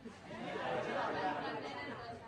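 Low chatter of several voices talking at once, overlapping with no single voice standing out.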